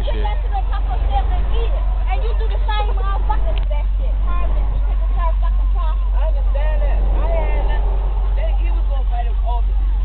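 School bus engine droning low and steady, heard from inside the cabin, under the overlapping chatter of many young passengers.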